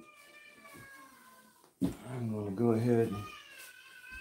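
A man's low, drawn-out wordless vocal sound, a hum or groan, lasting about a second and a half from about two seconds in.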